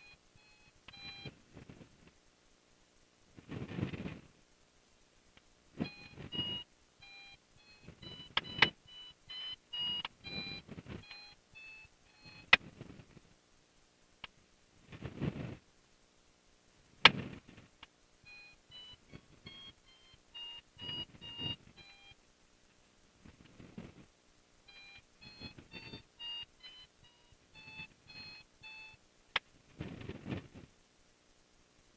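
Runs of short electronic beeps stepping up and down in pitch, coming in several bursts. Between them are brief low rushes of noise and a few sharp clicks.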